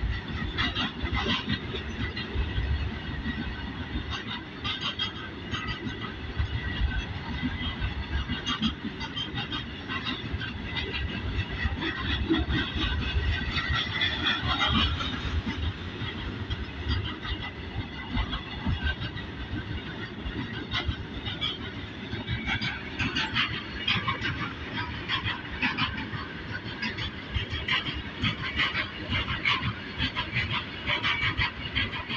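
A long string of Indian Railways BOXN open-top freight wagons rolling past close by: a continuous clatter of steel wheels on the rails, with a high metallic squeal running through it.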